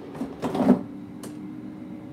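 Air fryer basket being slid back into the air fryer: a short sliding scrape and clunk about half a second in, then a small click, over a steady low hum.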